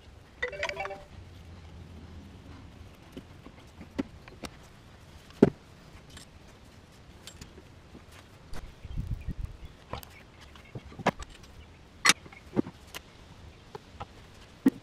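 Scattered sharp clicks and light knocks of hands handling parts in a Yamaha Rhino UTV's engine bay. A short high-pitched sound comes about half a second in, and a low rumble near the middle.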